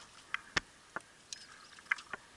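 A few sharp clicks and light knocks, with one louder knock about halfway through.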